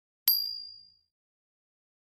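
A single high, bright ding from the notification-bell sound effect of an animated subscribe button, as its bell icon is clicked. It starts sharply about a third of a second in and fades away within about a second.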